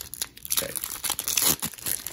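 Foil Pokémon card booster pack wrapper being torn open and crinkled in the hands: a dense, irregular crackle of thin metallic plastic.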